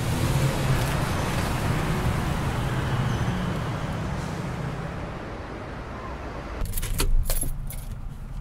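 Car engine and tyre noise as an SUV pulls into a parking space, fading away over about five seconds. Near the end comes a quick cluster of sharp clicks and rattles.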